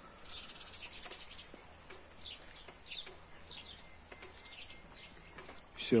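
Small birds chirping faintly: short, high, falling chirps repeated every half second to a second.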